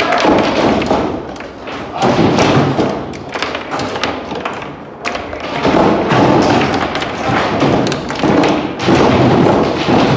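FAS foosball table in play: a rapid, uneven run of knocks as the hard ball strikes the plastic players and the table walls, with the rods clacking as they are slid and spun. It is busiest near the start and again from about halfway.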